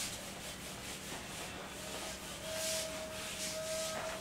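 A whiteboard eraser wiping across a whiteboard in repeated swishing strokes, erasing the writing.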